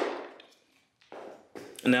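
Two light knocks about half a second apart as a BWSS adjustable dumbbell is settled into its plastic cradle base.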